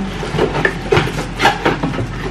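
Cardboard box and plastic wrapping being handled as a plastic storage container is pulled out of its box: a string of short rustles and scrapes.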